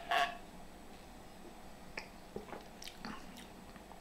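A man sipping a long drink from a glass and swallowing: a short sip right at the start, then a few faint mouth clicks as he swallows.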